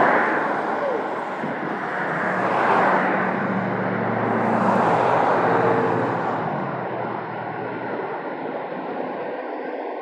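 Road traffic passing close by: several vehicles drive past one after another, their tyre and engine noise swelling and fading, with one engine's hum heard most clearly in the middle before the road goes quieter.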